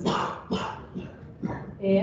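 A person's indistinct vocal sounds: a short noisy burst at the start, then faint scattered murmurs with no clear words.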